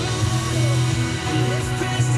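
Country-pop music from an FM radio broadcast, playing through small desktop computer speakers and a subwoofer, with a steady, prominent bass.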